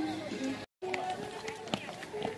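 The end of a song in the background, cut off abruptly by an edit under a second in. Then outdoor live sound of a group walking down steps: scattered footsteps and faint voices.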